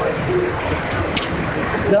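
Steady outdoor roadside noise, a low rumble with hiss, of the kind a body-worn hidden camera's microphone picks up, with faint voices in the background and a small click about a second in.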